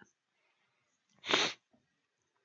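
A person's single short, sharp burst of breath noise about halfway through, after a second of near silence.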